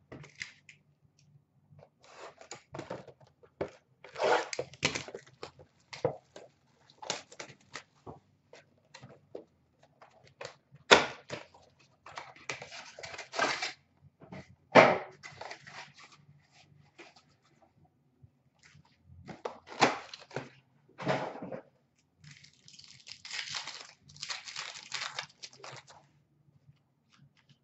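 A cardboard hockey-card blaster box being torn open and its packs handled: irregular tearing and rustling of cardboard and wrappers, with a few sharp knocks partway through. Near the end comes a longer crinkling tear, as of a foil card pack being ripped open.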